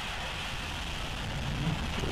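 Atlas V rocket's RD-180 first-stage engine firing at ignition on the launch pad, heard as a steady noise with a low rumble.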